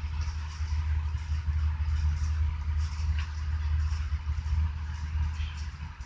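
A steady low rumble with a fainter hiss above it, and a faint click about three seconds in.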